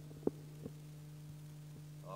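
Handling noise from a handheld microphone: one sharp thump about a quarter second in and a softer knock just after half a second, over a steady low electrical hum.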